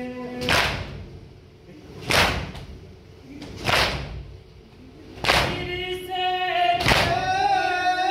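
Mourners beating their chests in unison (matam), five sharp slaps about one and a half seconds apart, keeping time for a nauha. Male voices chant the lament: a held note ends about half a second in, and the singing starts again about five and a half seconds in.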